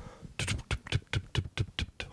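A man making clicking mouth sounds close into a handheld microphone, a quick even run of about seven clicks a second, imitating a ghost-train car clattering along its track as the ride sets off.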